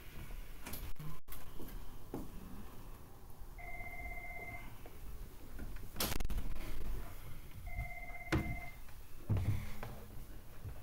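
An electronic beep sounds twice, about four seconds apart, each a steady tone lasting about a second, amid a few knocks and room noise.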